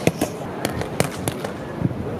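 Boxing gloves striking a trainer's focus mitts: a quick run of sharp smacks, several a second, thrown in short combinations.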